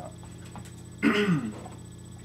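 A man clearing his throat once, a short throaty sound about a second in that falls in pitch.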